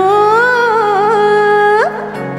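Marathi devotional song: a voice holds one long note that rises gently, then slides up sharply near the end, over a steady low drone.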